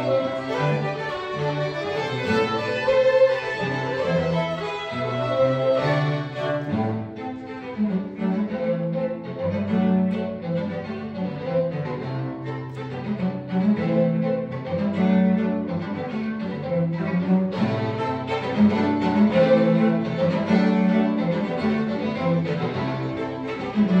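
String quartet of two violins, viola and cello playing a traditional tune, with the cello's low line carrying steady notes under the upper strings.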